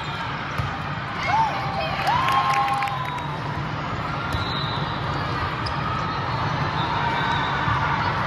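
Volleyball being struck and bouncing, with a few sharp hits about a second in, over the steady din of a large tournament hall with several matches under way. Voices of players and spectators call out above it.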